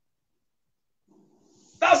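Near silence, then a man starts speaking again near the end.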